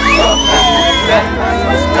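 Group of Maasai men chanting for the adumu jumping dance, several voices wavering and overlapping. It opens with a high rising call held for about a second, over a steady low rumble.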